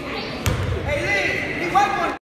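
Voices of players and spectators during a basketball game, with a basketball striking the gym floor once, sharply, about half a second in.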